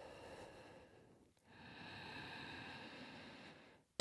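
Faint ujjayi breathing, the audible breath made with a slightly narrowed throat in Ashtanga yoga. One breath fades out in the first second, then another long breath starts about a second and a half in and lasts about two seconds.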